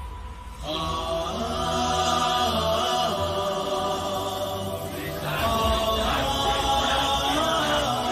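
Background score of a chorus of voices chanting on long held notes, coming in about a second in and growing busier and more pulsing from about five seconds in.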